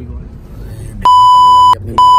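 A loud, steady 1 kHz bleep that switches on abruptly about a second in and lasts under a second, with a second identical bleep starting right at the end: an edited-in censor bleep laid over the talk.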